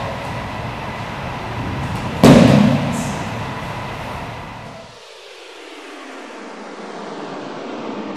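Steady rumbling room noise in a large gym hall, with one loud thud about two seconds in as a body hits the wrestling mat during a takedown. The noise thins out after about five seconds.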